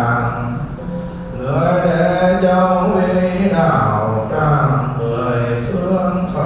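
Buddhist monk chanting a prayer into a microphone: a male voice on long held notes that step between pitches, with a brief pause about a second in.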